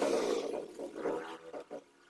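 Packaging being handled in a winch box: plastic bags rustling and polystyrene foam packing rubbing and squeaking as parts are pulled out. It is loudest at the start, with a few shorter scrapes after.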